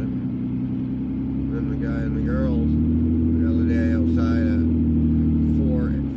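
Car cabin noise while driving: a steady low drone of engine and tyres, with several level low tones, that eases off right at the end.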